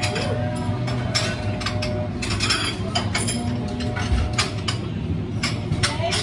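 Café counter clatter: irregular clicks and knocks of cups and barista tools being handled, over a steady low hum of equipment.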